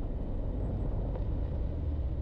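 Low, steady rumble of a car driving: engine and tyre noise on a rough road.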